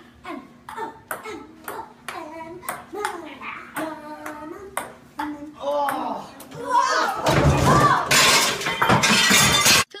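Table-tennis rally on a dining table: quick clicks of the ball on the table and paddles, about three a second, with voices over it. For the last three seconds there is loud shouting and shrieking that cuts off suddenly at the end.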